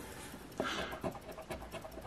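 A scratch-off lottery ticket being scratched by hand: a few short, scraping strokes about two a second as the coating is rubbed off the play area.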